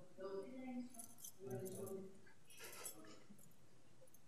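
Faint, indistinct talk in the background of a meeting room, with a few light clinks or rattles in between.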